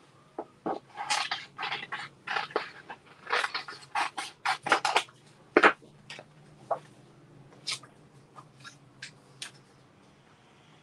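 Small scissors snipping through patterned paper, cutting out a printed image: a quick run of snips over the first five seconds or so, then sparser, fainter ones.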